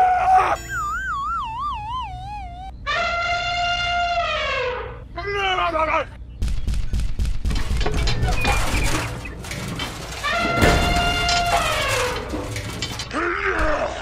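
Dubbed-in cartoon sound effects: a wobbling, whistle-like tone, then long held calls that drop in pitch at the end, and a few seconds of crashing, shattering noise in the middle.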